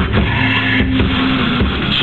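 Live rock band playing loudly: a distorted electric guitar chord is held over a wash of cymbals, with no regular drum beat for these seconds.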